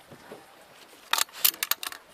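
A quick burst of sharp, rattling clicks, like small hard objects knocking together, about a second in and lasting under a second.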